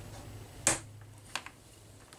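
Plastic tie-rod end snapping onto a ball stud of an RC car's steering linkage: one sharp click about two-thirds of a second in, then a fainter click.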